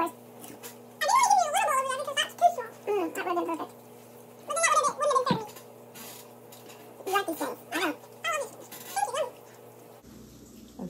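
Wordless, high-pitched vocal sounds: short calls that slide up and down in pitch, in three bunches separated by pauses.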